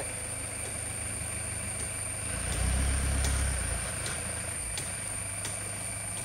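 Loaded diesel tipper truck's engine idling, swelling louder for about a second and a half around the middle. Faint ticks sound a little under a second apart over it.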